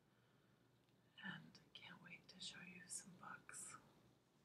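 A woman talking softly in a near-whisper, starting about a second in. Speech only.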